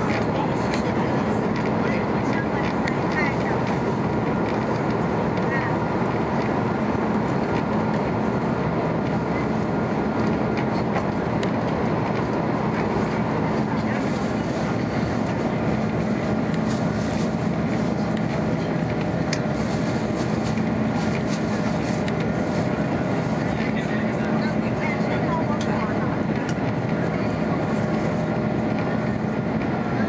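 Cabin noise inside an Airbus A330-243 climbing after takeoff: its Rolls-Royce Trent 700 turbofan engines and the rushing airflow make a steady drone with a low hum throughout.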